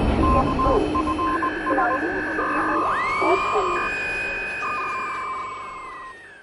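Electronic intro sound effects, radio-like: the low rumble of an explosion dying away under a run of short beeps and steady tones alternating between two pitches. About three seconds in, a whistling tone sweeps up, holds, then slides down as everything fades out.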